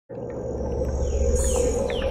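Animated intro sound effects: a steady high whine over a low hum, with several short whistles that fall in pitch, starting abruptly.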